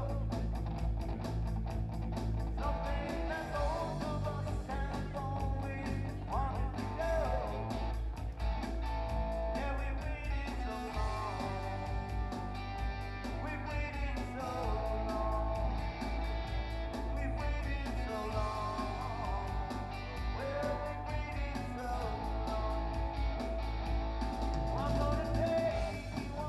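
A live rock song played by a small band, with electric bass, electric guitar and keyboard over a steady beat, and a melody line that bends up and down.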